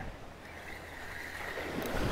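Wind rumbling on the microphone over the wash of small surf breaking on the beach.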